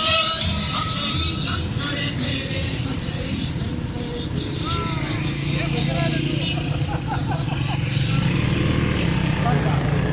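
Motorcycles and cars driving past in a convoy, their engines running steadily, with people's voices calling out over them. The engine sound grows louder near the end as a motorcycle comes close.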